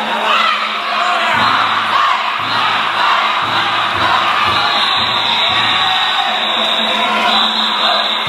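Danjiri festival procession: a crowd of rope-pullers shouting and calling as they run with the float, over festival music with drum beats roughly once a second.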